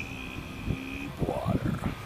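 Speech: a man's voice drawing out the word "Deeep" on one steady pitch for about a second, then a short rising vocal sound.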